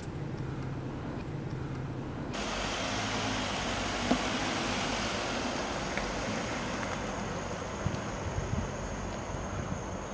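A car engine running with a steady low hum. About two seconds in, a louder, even rushing noise of the car on the move cuts in suddenly and continues, with a faint steady high whine in the second half.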